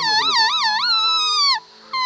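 A leaf held against the lips and blown as a reed: a loud, high, reedy tone warbling up and down about four times a second. It breaks off about a second and a half in and starts again near the end.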